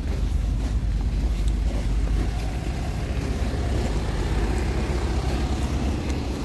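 Steady low rumble of idling lorries, vans and cars in a stationary traffic jam, mixed with wind on the microphone.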